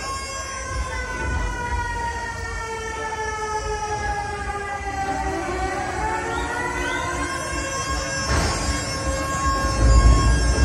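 Electronic dance music over a nightclub sound system, in a breakdown: a siren-like synth tone glides slowly down, then several tones sweep upward, a burst of noise comes about eight seconds in, and the heavy bass comes back in right at the end.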